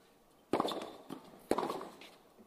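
Tennis ball struck by rackets in a rally on a hard court: two sharp hits about a second apart, the first trailing off more slowly.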